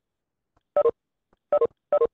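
Video-call app notification chimes, three short two-note electronic tones at uneven intervals: the alert played as participants leave the meeting.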